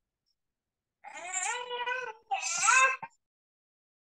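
Two long, high-pitched, wavering cries, the first about a second long and the second shorter, heard through a video-call microphone.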